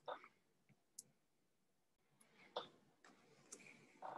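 Near silence, broken by a few faint, short clicks spread through the pause.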